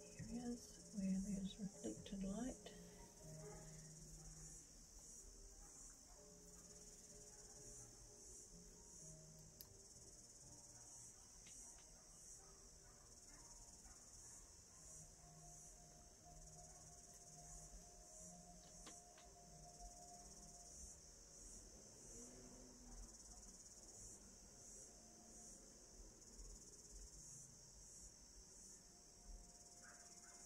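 Near silence with a faint, steady high-pitched chirring of insects. A few brief louder sounds come in the first few seconds.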